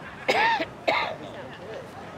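A person close to the microphone makes two short, loud vocal sounds in quick succession, each rising and then falling in pitch.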